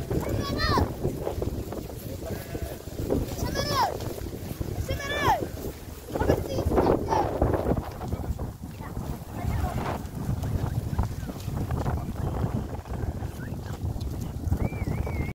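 Sheep bleating as the flock walks, with about four short calls that rise then fall in pitch in the first half, over wind buffeting the microphone.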